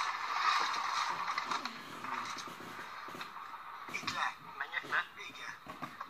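Re-recorded TV audio played through a small speaker: a steady hiss for the first couple of seconds, fading into brief, muffled voices.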